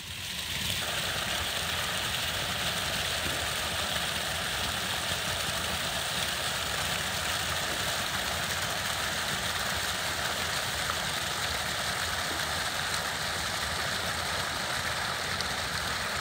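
A partly frozen brook running: a steady, even rush of water that comes in suddenly at the start and holds without change.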